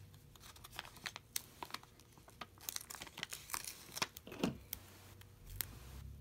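Faint, irregular crackling and rustling as the paper backing is peeled off adhesive foam strips and the strips are pressed onto cardstock and a plastic window sheet. A short falling squeak sounds about four and a half seconds in.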